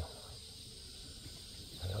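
Faint, steady high-pitched chirring of insects in the background; a man's voice starts up near the end.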